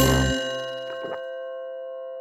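A bell-like chime struck once with a short low thud, its tones ringing on and slowly fading. Two faint taps come about a second in.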